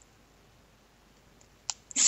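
Near silence with a faint hiss, broken by a sharp click near the end and a fainter click just after it.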